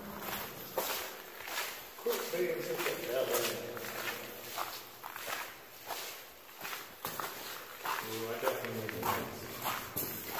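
Footsteps on a gravel path inside a stone-lined railroad tunnel, at a steady walking pace.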